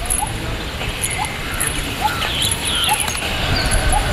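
Outdoor field ambience with a low rumble and an animal giving short rising calls about once a second.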